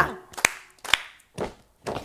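Two sharp hand claps about half a second apart, then two fainter thuds at the same pace, the beat of a children's action song's clap-and-stamp pattern.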